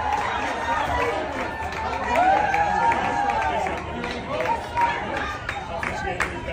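A crowd of people talking and calling out over one another, an unbroken hubbub of overlapping voices with no single clear speaker.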